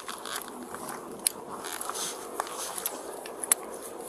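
Clothing and arms rubbing and scraping against a police body-worn camera's microphone during a close physical struggle, with a few sharp clicks, the loudest near the end.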